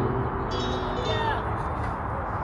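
Bright, high chime-like tones ringing over a steady background noise, with a few short rising glides about a second in.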